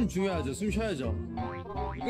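Comic edit background music: springy, boing-like sliding tones bounce up and down several times a second over a steady low beat, with a man talking over it.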